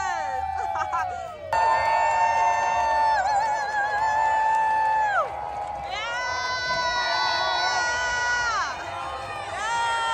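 A singing voice holding long, drawn-out notes with a waver in them, each ending in a downward slide, cutting in suddenly and louder about a second and a half in.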